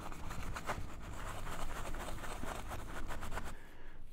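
Isopropyl-wetted paper towel rubbed quickly back and forth over the metal lid of an AMD Ryzen CPU, a faint scratchy scrubbing that thins out near the end.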